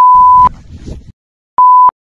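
Censor bleep: a steady, high pure-tone beep masking swearing, once for about half a second at the start and again briefly near the end, with the audio cut to dead silence between.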